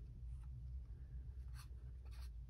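Faint handling noise as a phone is pressed into an aluminium tripod phone clamp: light scratching with a couple of soft clicks, over a low steady hum.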